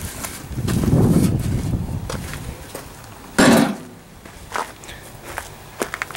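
Handling noises: a low rustling rumble in the first second or two, scattered light clicks, and one louder short knock about three and a half seconds in.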